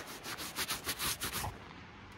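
Camera lens being wiped clean, rubbing right against the microphone in quick strokes, several a second, that stop about a second and a half in.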